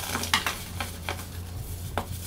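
Pressed, molded baking soda crumbled and crushed between the fingers: a run of irregular dry crunches, the loudest about a third of a second in.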